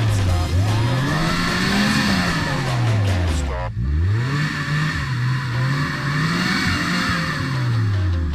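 A 4x4's engine revving up and down again and again as the vehicle works through a deep muddy water hole, each rise in revs followed by a fall. The revs drop off sharply about halfway through, then climb again.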